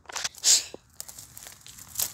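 Footsteps crunching on loose railway-track ballast gravel, with one loud crunch about half a second in and a few lighter crunches after.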